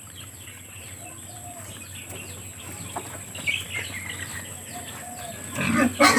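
Faint scattered chicken clucks and small-bird chirps in the background of a farmyard, with no one speaking.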